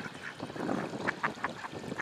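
Mallard ducks giving a few short, soft quacks.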